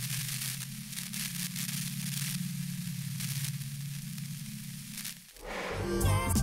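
Electric energy sound effect: a low buzzing hum under crackling static, cutting off abruptly a little over five seconds in as music begins.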